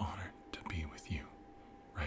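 A man's soft, whispery speech, a few short syllables in the first second, over a faint steady hum.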